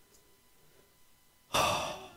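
A man's sigh-like breath into the microphone about one and a half seconds in, breaking a near-silent pause and fading quickly.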